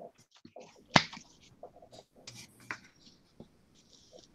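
Light handling noises on a craft table: scattered small taps and rustles as supplies are moved and a squeeze bottle of white glue is picked up and used, with one sharp click about a second in that is the loudest sound.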